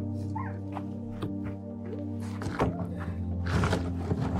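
Background film score: sustained low chords, with percussion hits coming in about two seconds in and growing busier toward the end.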